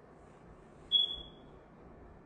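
A single short, high-pitched electronic beep about a second in, steady in pitch and fading out over about half a second, over faint room tone.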